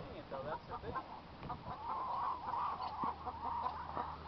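Chickens clucking in short calls, with a longer wavering call about two seconds in.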